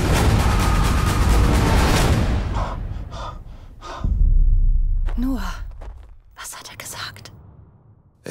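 Film-trailer sound mix: a loud, dense clamour of fighting fades away about two seconds in, a deep boom hits about four seconds in, and then come breathy gasps, sighs and whispers.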